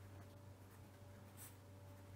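Faint scratching of a fine felt-tip pen writing on paper, with a brief sharper stroke about one and a half seconds in.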